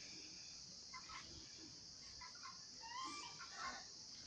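Faint, scattered bird calls, a few short chirps and gliding notes, over a steady high hiss.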